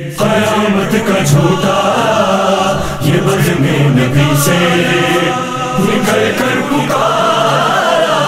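Men's voices singing the refrain of an Urdu manqabat in chorus, with a sustained low drone under the melody.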